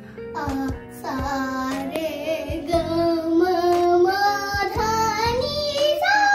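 A child singing a melody of long held notes over instrumental backing music, the sung line climbing in pitch toward the end.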